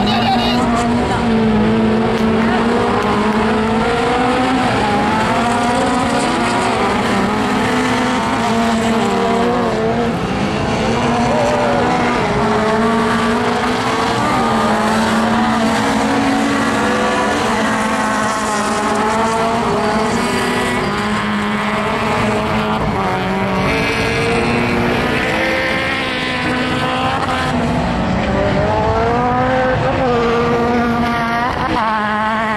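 Several race car engines revving hard and changing gear together, their notes rising and falling over one another as a pack of touring cars races on a dirt track.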